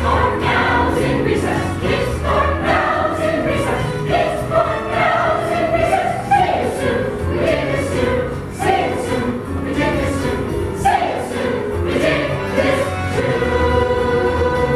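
A large stage chorus of children and adults singing together, with a steady beat under the voices.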